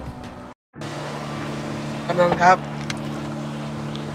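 Music ends about half a second in, and then a vehicle engine idles with a steady low hum.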